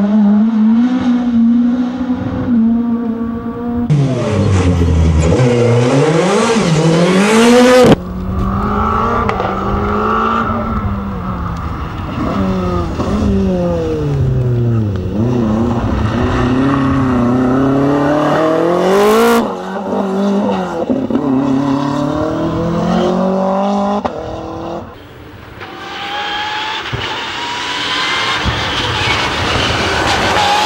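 Rally car engines revving hard through corners, pitch climbing and dropping with throttle lifts and gear changes, as one car after another passes. The sound changes abruptly several times as it switches from one car to the next.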